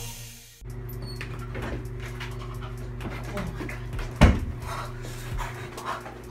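Intro music fading out, then a small bathroom with a steady low hum and a man's short, heavy breaths, broken a little past four seconds in by one loud thump.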